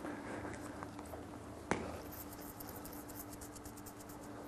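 Quiet room tone in a small hall: a steady low hum, one sharp click a little under two seconds in, then faint rapid ticking.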